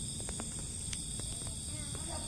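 Crickets chirring steadily at a high pitch, with a few faint clicks in the first second or so.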